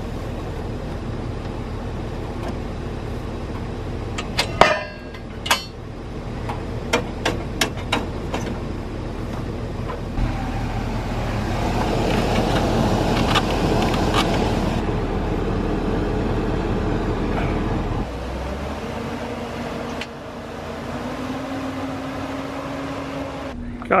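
A pickup truck engine idles steadily while a snowplow is unhooked from its front mount. Sharp metal clicks and knocks come about four to eight seconds in, then a louder whirring stretch in the middle.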